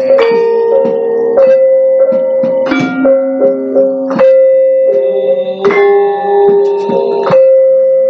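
Javanese gamelan ensemble playing: bronze metallophones and gong-chimes struck in a steady melody, each note ringing on under the next stroke.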